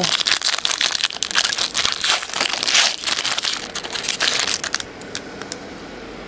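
Foil wrapper of a trading-card pack crinkling as it is handled and opened. The crinkling is dense for about four seconds, then dies down.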